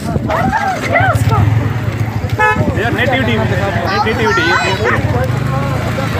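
Voices talking over a steady low rumble, with a short, steady vehicle horn toot about two and a half seconds in.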